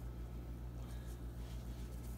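Steady low hum of room tone, with a couple of faint soft shakes about a second in as a spice shaker sprinkles paprika onto asparagus.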